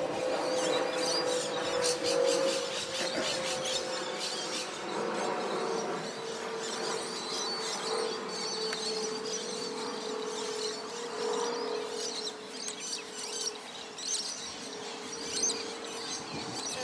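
Outdoor ambience of birds chirping over a steady low drone that sinks slightly in pitch.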